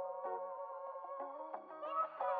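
Quiet background music: held, pitched notes that shift every fraction of a second, swelling just before the end.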